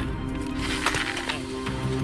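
Background music with steady held notes.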